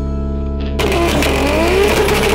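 Background music, and about a second in a Nissan Skyline R32's engine comes in loud over it, revving up with rising pitch as the car spins its rear tyres in a burnout.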